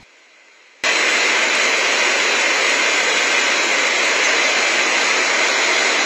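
A steady, loud rushing hiss with no pitch that starts suddenly about a second in and holds unchanged.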